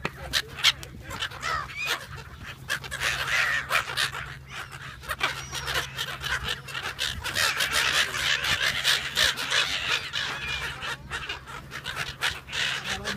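A large flock of brown-headed gulls calling, many overlapping calls throughout.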